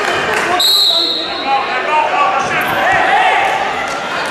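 A referee's whistle blows once, a short shrill tone about half a second in, restarting the wrestling bout. Voices shout in the background in a large, echoing sports hall.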